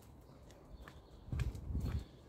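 Footsteps on a paved sidewalk, a few sharp clicks, with a louder low rumbling thump from about a second and a half in.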